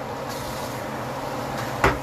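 Steady hiss over a low hum from a skillet of chicken in cream sauce simmering on a gas stove as a wooden spatula stirs it, with a sharp knock near the end.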